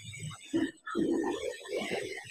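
A low, indistinct voice murmuring without clear words.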